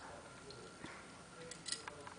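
A quiet room with a few faint, short clicks, one at the start and a small cluster about a second and a half in.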